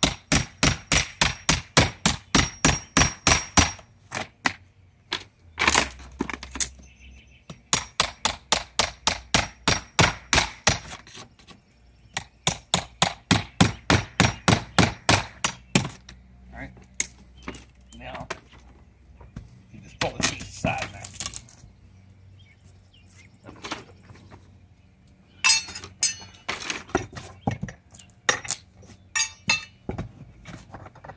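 Hammer striking a five-in-one tool wedged up under a siding board to shear the nails holding it: quick runs of metal-on-metal taps, about four or five a second, broken by short pauses, then slower scattered taps and a last quick run near the end.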